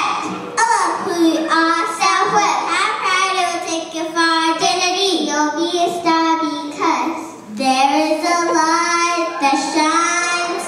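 A child's voice singing a melody without backing, with long held notes and a short break about seven seconds in.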